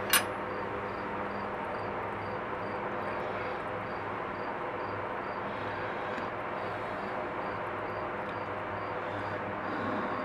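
Steady background hum and hiss, with one sharp click right at the start.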